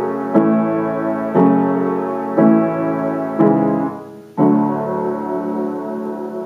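Piano played with both hands in slow block chords, moving through an F-sharp minor, A, C-sharp minor and D progression. There are five chords about a second apart, each held until the next, and the last is left ringing out.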